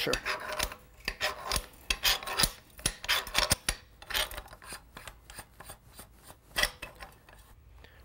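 Wrench loosening the packing gland of a Conval Clampseal globe valve: irregular metallic clicks and scraping, densest in the first few seconds and thinning out, with one sharp click about two-thirds through.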